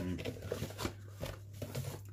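Faint handling noises: a few small clicks and rustles as a Polaroid camera and its paper manual are handled, over a steady low hum.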